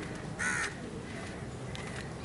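A crow cawing once: a single short caw about half a second in, over a quiet open-air background.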